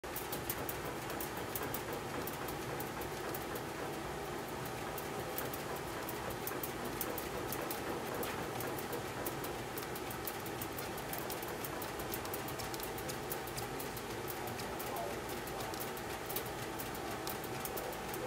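Hand-operated bat rolling machine turning a DeMarini Voodoo One BBCOR bat between its rollers: a steady rolling noise with a dense patter of light ticks and a faint steady hum.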